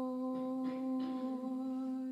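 A single voice chanting one long, steady note of a liturgical hymn, without clear words.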